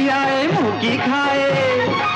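Music from a 1970 Hindi devotional film song: a melody over steady percussion, with a downward slide in pitch about half a second in.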